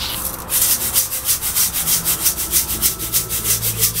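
Mountain sand (yamazuna) bonsai soil being shaken in a round stainless steel sieve, grit rattling and scraping over the mesh in a fast even rhythm of about six or seven shakes a second, starting about half a second in. The shaking sifts the fine dust out of the sand.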